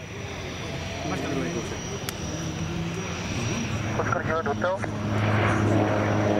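Cessna 208B Grand Caravan's single PT6A turboprop engine at takeoff power as the plane lifts off and climbs away, growing steadily louder, with a low propeller drone that strengthens over the last couple of seconds.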